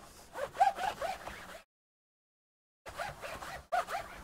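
A cloth wiping back and forth over the plastic base of a laptop, a quick run of rasping strokes, broken by about a second of dead silence in the middle before the strokes resume near the end.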